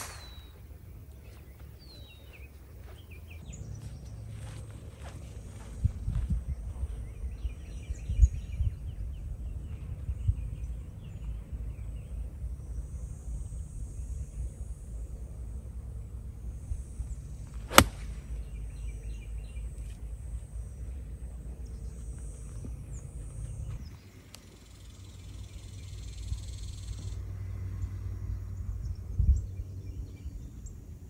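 Low wind rumble on the microphone with birds chirping. About 18 seconds in comes one sharp click of a 48-degree wedge striking a golf ball.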